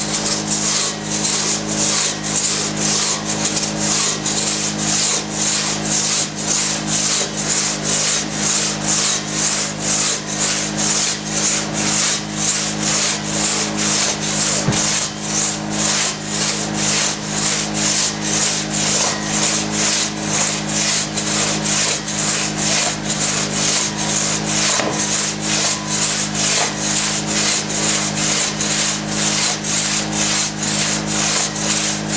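A one-man crosscut saw being pulled back and forth through a large log, its teeth rasping through the wood at a fast, even pace of about two strokes a second. A steady low hum runs underneath.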